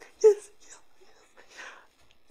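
A man laughing in quick, breathy bursts, with one loud burst just after the start, then softer breathy laughter trailing off.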